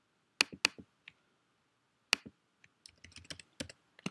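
Computer keyboard and mouse clicks: a few separate sharp clicks in the first half, then a quick run of light keystrokes near the end.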